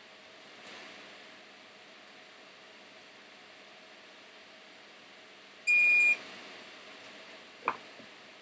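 A single electronic beep from repair bench equipment: one steady high tone about half a second long, about six seconds in, over faint room hiss. A short click follows near the end.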